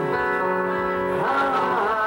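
Live rock band playing, electric guitars ringing out held notes, with one note sliding up and back down about halfway through.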